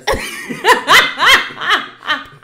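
A woman laughing loudly: a run of quick, arching 'ha' pulses, about three a second.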